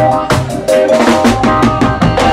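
Live funk-blues band playing an instrumental stretch with no vocals: a drum kit keeps a steady beat of bass drum and snare under held notes from the electric keyboard, bass and guitar.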